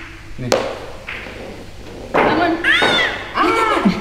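A single sharp knock about half a second in, then excited high voices exclaiming and laughing through the second half.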